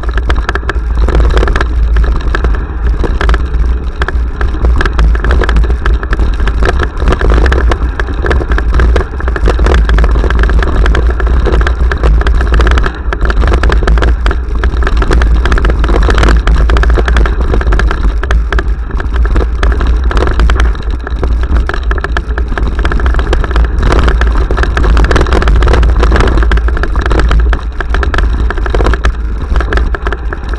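Mountain bike descending a rough dirt trail, heard through an action camera: steady rumble and wind buffeting on the microphone, with constant rattling knocks as the bike jolts over the ground.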